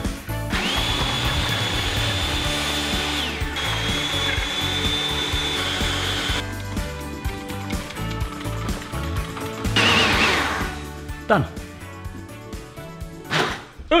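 Personal blender motor whirring at a steady high pitch as it blends ice cream, hazelnut milk and chocolate powder into a milkshake. It pauses briefly about three and a half seconds in and stops about six seconds in, after which music plays.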